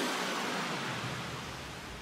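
A hiss of noise that fades steadily away, the closing noise effect of an electronic DJ mix, with no beat or bass left under it.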